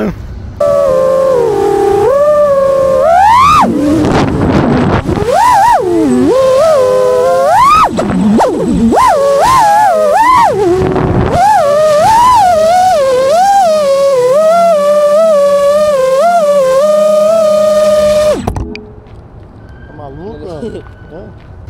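FPV quadcopter's brushless motors whining loudly in freestyle flight, the pitch swooping sharply up and down with the throttle, then wobbling quickly. The whine cuts off suddenly near the end as the drone is set down. Brief laughter at the start.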